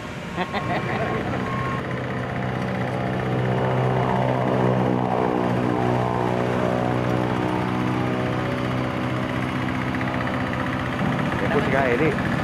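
Hand tractor engine running steadily as it pulls a tilling implement through the field, growing louder over the first few seconds as it comes closer.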